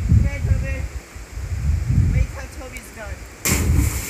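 Low wind rumble on the microphone with faint distant voices, then near the end a sudden loud splash as a cliff jumper plunges into a deep rock pool, the water still churning afterwards.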